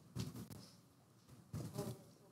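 Faint, distant murmur of people in the congregation talking quietly with their neighbours, rising in two short spells, early and near the end.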